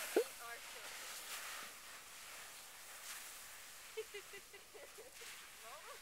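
Faint hiss of boots sliding over snow, fading as the slider moves away down the slope, with faint distant voices about four seconds in.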